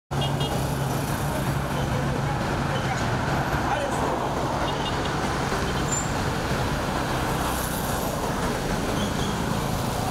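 Road traffic: cars and motorcycles moving slowly along a town street, a steady mix of engine noise. A low engine hum stands out for the first few seconds.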